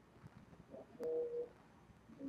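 Quiet room tone with one short hummed sound from a person's voice, about half a second long, a second in.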